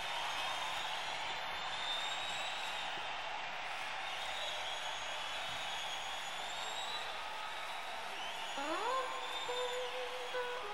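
Concert crowd noise in a lull between songs: a steady low wash of cheering and chatter from the arena audience. Near the end a guitar note rises in pitch and holds.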